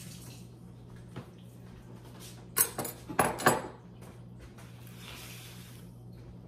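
Kitchenware clattering: a quick cluster of sharp clinks and knocks about halfway through, over a steady low hum.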